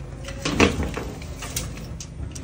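Drywall tools handled against a sheet of drywall: a brief scraping knock about half a second in, then a lighter click, as a T-square is moved over the board and a tape measure is pulled out.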